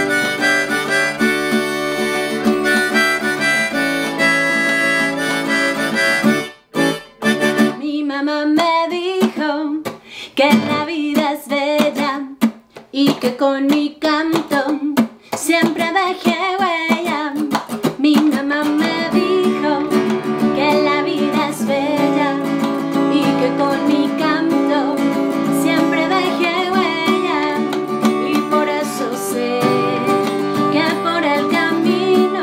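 Gibson acoustic guitar strummed under a neck-rack harmonica playing held chords for about six seconds, then a woman singing over the guitar. Midway the music goes choppy, with short stops and breaks, before settling into steady strumming and singing.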